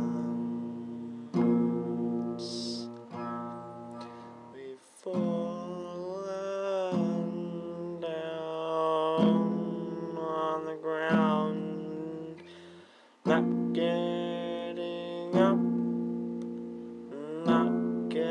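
Acoustic guitar strummed, a chord struck about every two seconds and left ringing, under a man's voice holding long notes that slide up and down in pitch.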